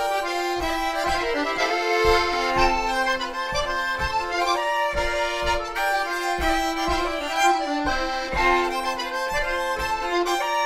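Norwegian folk dance tune (springleik) played live on fiddle, chromatic button accordion and small red diatonic button accordion, the accordions carrying the melody over a steady low beat.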